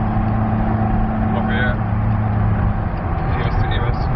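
Chevrolet Corvette Z06's 7.0-litre V8 heard from inside the cabin, running at steady revs under load with road noise beneath it. The steady note breaks off about three seconds in.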